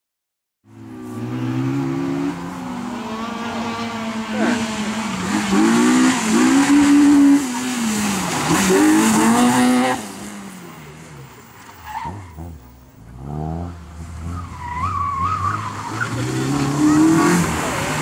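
Honda Civic Type R's high-revving 1.6-litre VTEC four-cylinder engine driven hard, its pitch rising and falling again and again as the driver accelerates, lifts and brakes through tight corners, with tyre squeal. It goes quieter for a few seconds past the middle, then loud again near the end.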